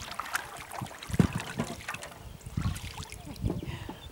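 Double-bladed kayak paddles dipping into calm river water in an uneven rhythm, with splashing and dripping from the blades between strokes.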